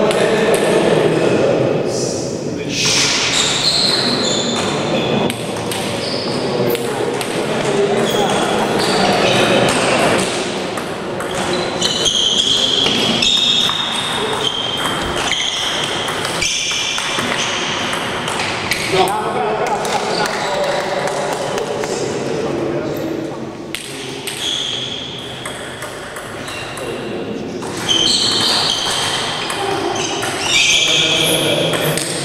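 Table tennis ball being hit back and forth, sharp clicks of the ball on the bats and the table, echoing in a large hall, with people talking in the background.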